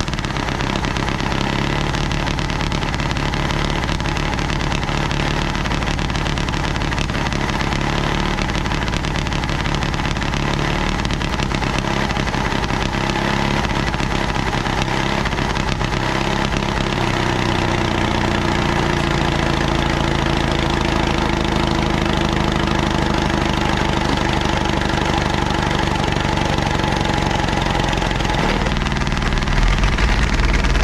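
The small gasoline pony engine of a 1956 Caterpillar D6 9U dozer running steadily while it turns over the main diesel. Near the end a deeper rumble joins in as the cold diesel fires and puts out black smoke.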